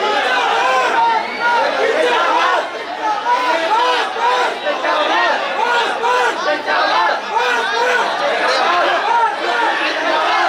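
Crowd chatter: many voices talking over one another at once, loud and unbroken.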